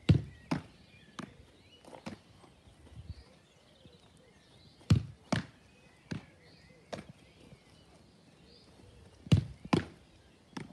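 A Gaelic football thudding as it is kicked and caught in goalkeeper gloves: about ten sharp thuds spread out, the loudest at the start, about five seconds in, and a close pair near the end.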